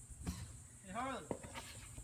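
Quiet handling of a car's plastic cabin-filter housing with a faint click, and a brief murmured vocal sound that rises and falls about a second in.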